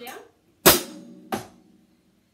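Two strokes on an acoustic drum kit, the first loud and the second softer about three-quarters of a second later, each ringing briefly.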